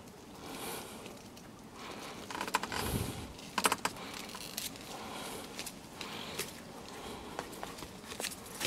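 Scissors snipping and hyacinth stalks and leaves being handled: scattered faint clicks and rustles, busiest around three to four seconds in.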